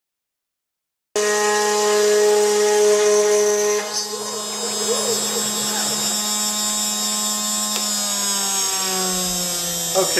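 CNC router spindle with a one-eighth-inch downcut bit milling the outline of a hardwood guitar headstock: a loud, steady machine whine made of several tones. It starts abruptly about a second in, and its pitch sags slightly over the last couple of seconds.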